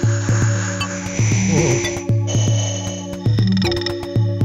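Buchla-format modular synthesizer patch playing a repeating pattern: a low, held bass-drum tone, ringing pitched tones and sharp clicks. Over it sits a bright, hissing wash of granular texture from the Stereo Microsound Processor, with a brief swooping pitch in the middle, and the wash cuts off suddenly about two seconds in.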